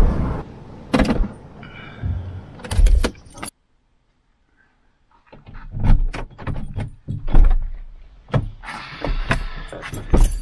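Low road rumble inside a moving vehicle's cab, with a couple of sharp knocks. After a sudden break, a car door is opened, with many clicks, knocks and rustling as things are handled at the passenger seat.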